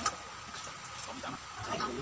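A sharp clink of a utensil on dishware at the very start, then scattered small clicks and soft low sounds of people eating at a table.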